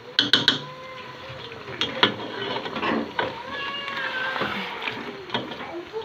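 A spatula knocking and scraping against a cooking pot as chicken in thick masala is stirred, with the sharpest knocks just after the start. Under the knocks run drawn-out, high, wavering voice-like calls.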